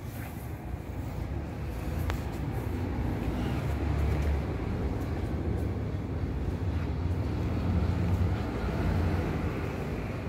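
Low rumble of passing motor traffic that swells and eases over several seconds, with a single sharp click about two seconds in.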